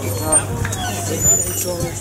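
People's voices talking over a steady low hum.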